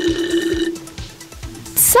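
Background music for a children's video, with a long held note that fades about halfway through. Near the end comes a short, bright, hissing swish.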